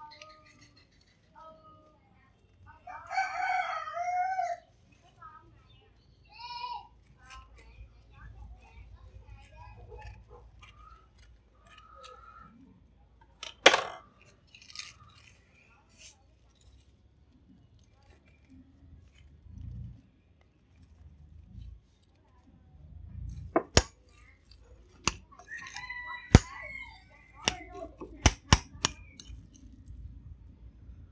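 A rooster crowing once, loud and about a second and a half long, a few seconds in, with a fainter call near the end. Sharp clicks and knocks of kitchen utensils against bowls come midway and near the end.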